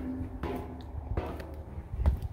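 Footsteps at a walking pace, about one every three-quarters of a second, coming off the bottom treads of a steel grating stair onto concrete, over a low rumble.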